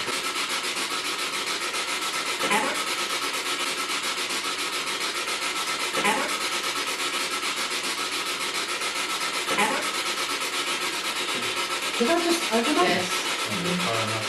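SB7 spirit box sweeping through radio stations: a steady hiss of static chopped into rapid, even pulses, with brief snatches of voice about 2.5, 6 and 10 seconds in and a longer burst of voice near the end.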